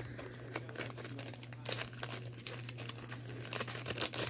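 Crinkling and rustling of plastic packaging being handled, with scattered small clicks, over a low steady hum.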